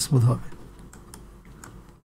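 A man's voice trails off, then a few faint clicks of a computer keyboard and mouse.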